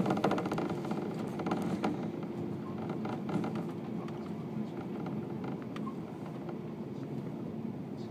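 Running noise heard inside a 185-series electric train car in motion: a steady rumble of wheels and motors on the rails, with a quick cluster of clicks at the start and a few more about two seconds in as the wheels pass over rail joints.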